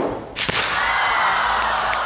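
A load of water dumps suddenly from an overhead game-show umbrella onto a person, starting about a third of a second in and pouring down steadily, with shrieks over it.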